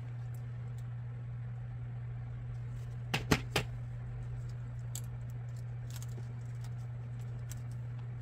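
A hot glue gun set down on the craft table: three quick, light knocks about three seconds in. A steady low hum and a few faint paper-handling ticks sit underneath.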